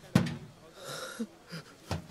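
A man panting and grunting with effort, with short wheezing breaths and gasps. A sharp thud on corrugated metal roofing comes just after the start, and another near the end.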